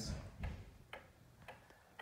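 Seikosha regulator schoolhouse pendulum clock ticking faintly and evenly, about one tick every half second.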